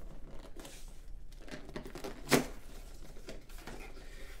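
A small cardboard shipping box being opened by hand: irregular rustling and scraping of cardboard as the flaps are pulled apart, with one louder, sharper rip a little over two seconds in.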